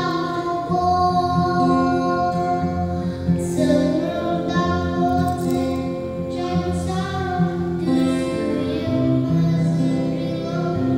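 A young boy singing a song in Changki, an Ao Naga dialect, into a microphone over a steady instrumental accompaniment.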